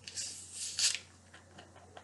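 Screw cap being twisted off a plastic bottle of soda, the carbonation escaping in two short hisses within the first second, followed by a few faint clicks.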